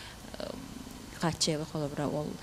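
Speech into a handheld microphone: a short pause with faint low room hum, then talking resumes a little over a second in.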